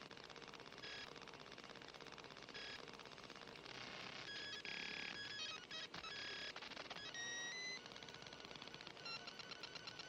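Faint electronic bleeping music: short beeping tones that step between pitches over a fast, even ticking pulse.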